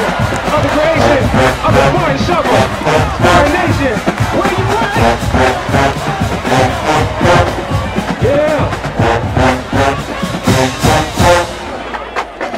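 Marching band playing loud brass over a steady drum beat, with the crowd in the stands cheering. The music cuts off just before the end.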